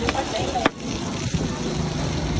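Street-side ambience: a steady low rumble of traffic under faint, indistinct voices, with two short clicks in the first second.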